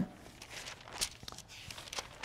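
Thin Bible pages being turned by hand: soft papery rustling and flicks, with one sharper page snap about a second in.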